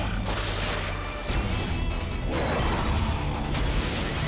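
Action music under sci-fi energy-beam sound effects: a charging hum, then a loud rushing blast about a second in as two robots fire beams together in a combined attack.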